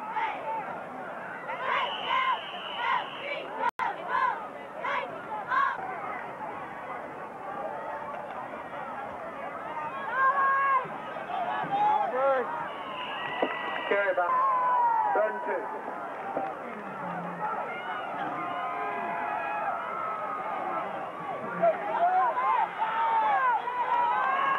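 High school football crowd: a rhythmic chant of about two shouts a second in the first five seconds, then many voices shouting and talking over one another.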